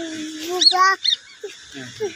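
A young child's voice: a held vowel that breaks into a short high squeal about half a second in, then goes quieter.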